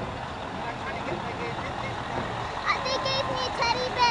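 Scania lorry towing a parade float, its engine running as it rolls slowly past, over a steady background of street and crowd noise. About three seconds in, a voice calls out briefly.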